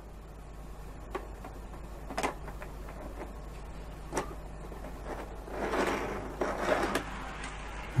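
Faint plastic clicks as an N-scale Kato passenger car is settled onto a Kato re-railer ramp, then a soft rolling rattle of its wheels for about a second and a half, a little past the middle, as it is pushed off the ramp onto the track.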